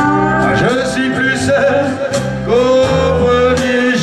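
Male singer holding long sung notes into a microphone over loud amplified backing music with a steady bass line, in a live stage performance of French rock.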